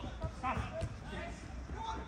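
Players' shouts and calls on an outdoor five-a-side football pitch, short and not close, with a dull thud or two of the ball being kicked in the first half second.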